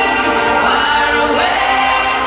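Live DJ-set dance music played loud over a PA, with a woman's sung melody gliding and held over it.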